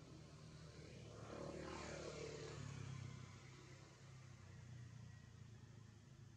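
A faint, distant engine passing by: a low hum that swells about two seconds in, with a sweep in pitch, and then fades away.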